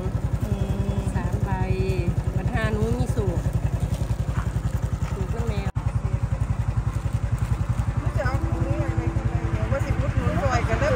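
Small motorcycle engine idling with a fast, even putter, under people talking.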